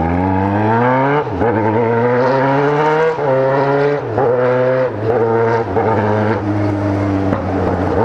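Yamaha XJ6's 600 cc inline-four engine pulling away, its pitch climbing and dropping back at each of several upshifts in the first five seconds, then running at a fairly steady pitch.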